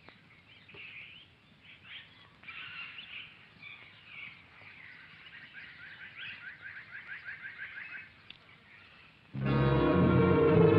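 Faint bird calls and chirps, including a rapid trill of about eight notes a second that runs for a couple of seconds. Loud music with sustained low tones comes in suddenly near the end.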